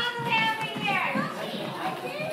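Young children's high-pitched voices calling out and chattering as they play.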